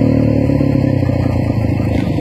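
Motocross dirt bike engine running at fairly low, steady revs as the bike rides across the arena.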